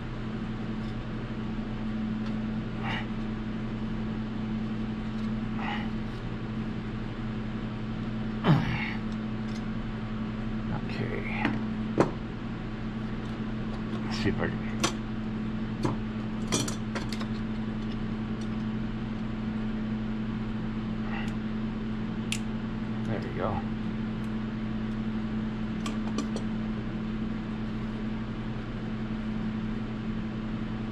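Scattered clicks and clinks of pliers gripping and bending a quarter-inch brass tube, a few at a time with long gaps between, over a steady low hum.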